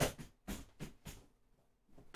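Books and gear being shifted and set down on a bookshelf: a quick run of about five light knocks and bumps in the first second, then quiet, heard from across a small room.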